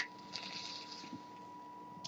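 A short click, then a faint, breathy hiss lasting under a second as a mouthful of e-cigarette vapor is blown out.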